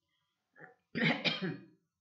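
A woman clearing her throat with a cough: a brief small sound about half a second in, then a louder one lasting under a second.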